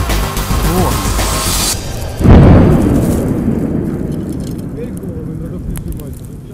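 Background music cuts off about two seconds in. A moment later a single loud explosion goes off, and its low rumble fades away over about three seconds.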